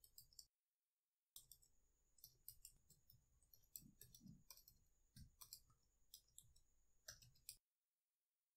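Faint computer keyboard keystrokes: irregular quiet clicks of someone typing. The sound drops to dead silence twice, just after the start and near the end.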